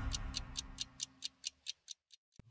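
Clock-like ticking from a TV programme ident's sound effect, sharp and even at about four and a half ticks a second, while the tail of the theme music fades out underneath.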